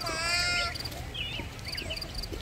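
A young child's high-pitched squeal, held for under a second near the start.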